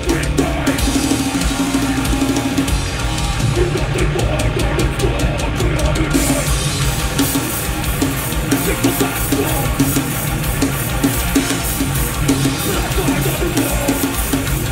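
Live beatdown hardcore band playing loud: a drum kit drives it with bass drum, snare and steady cymbal strokes under heavy guitars. The cymbal hits get busier about halfway through.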